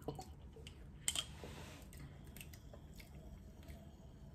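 Quiet sips and swallows of ramune soda from the bottle, with faint clicks and a short hiss about a second in. Soft chewing alongside.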